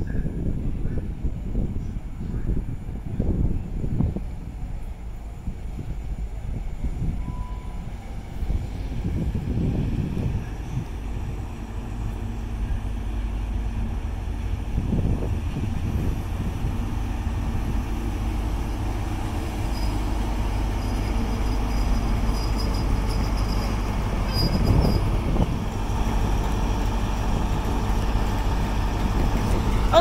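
GWR Class 43 HST diesel power car approaching through the station and passing at close range. Its engine gives a steady low hum over the rumble of the train, growing slightly louder toward the end as the power car draws alongside.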